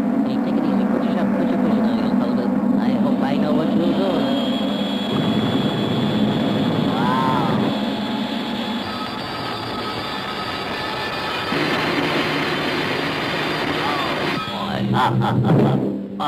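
Cartoon soundtrack of music and sound effects: a held high tone, a brief up-and-down glide about seven seconds in, and a run of clattering knocks near the end.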